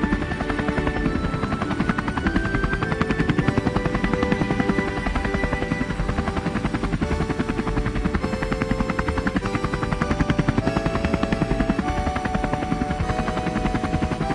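A light helicopter's rotor turning on the ground before lift-off, making a fast, even beat of the blades. A melody of held notes plays over it.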